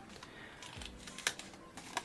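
Faint handling of a paper envelope: soft rustling with a few light clicks and taps, the sharpest a little over a second in.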